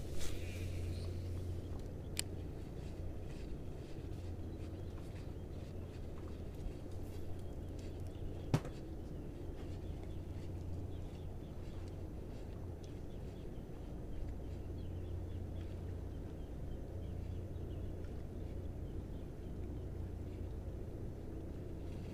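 Open-air ambience: a steady low rumble of wind on the microphone with faint bird chirps, broken by two sharp clicks, one about two seconds in and one about eight and a half seconds in.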